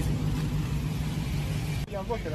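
A car engine idling with a steady low rumble, cut off abruptly near the end.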